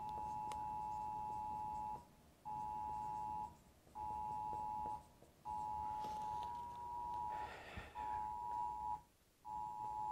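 Mobile phone sounding a Wireless Emergency Alert for a flash flood warning. It plays a two-pitch attention tone in the standard alert rhythm: one long tone and two shorter ones, then the same again.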